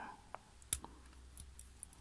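A few faint, sharp clicks of small steel fishing tackle (split ring, swivel and snap) against the jaws of split ring pliers as the ring is worked open. The strongest click comes about three-quarters of a second in.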